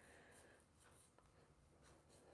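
Near silence: room tone, with only a couple of very faint ticks.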